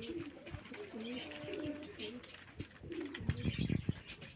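Domestic Van pigeons cooing, several rolling coos following one another, with a short louder burst of noise about three seconds in.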